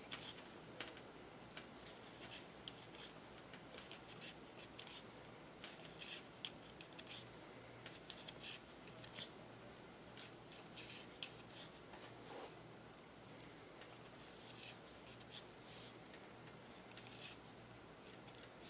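Faint, irregular clicking of knitting needles, with light rubbing of yarn, as stitches are purled across a row.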